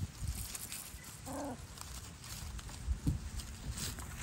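Schnoodle puppies playing, with one short, soft whimper about a second and a half in and a soft knock near the end, over a faint low rumble.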